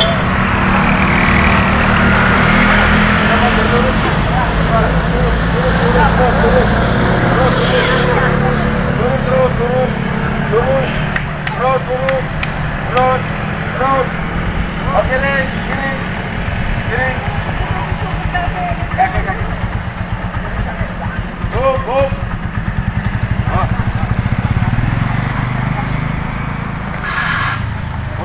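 Vehicle engines running in low gear on a steep hill climb, a steady low rumble, with people's voices repeatedly calling out over it.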